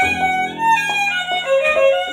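Two violins playing a melody together, sustained bowed notes changing pitch every fraction of a second.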